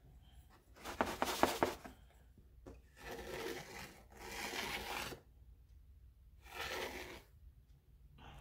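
A wooden stick scraping through a shallow tray of fine blue sand in about four separate strokes, each a second or less, as a letter is traced in the sand.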